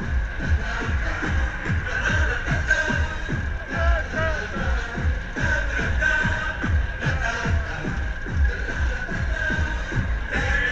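Loud electronic dance music from a fairground ride's sound system, driven by a steady kick-drum beat of about two beats a second.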